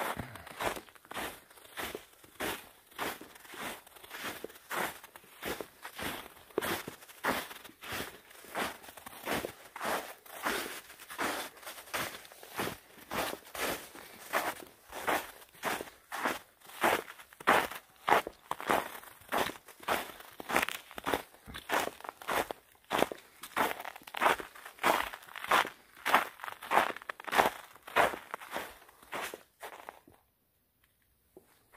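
A hiker's footsteps on a thinly snow-covered trail, a steady walking pace of about two steps a second, growing louder about halfway through.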